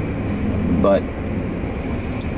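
Steady low rumble of a car running, heard from inside the cabin through the camera's built-in microphone.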